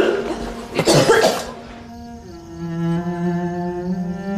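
A woman coughing hard twice over quiet background music. About halfway through, slow bowed-string music led by cello takes over.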